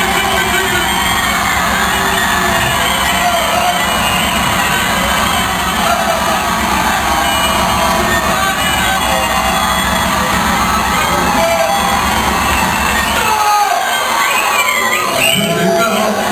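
Loud music with a heavy bass beat over a cheering, shouting crowd in a club. About two and a half seconds before the end, the bass drops out, leaving mostly the crowd's shouts.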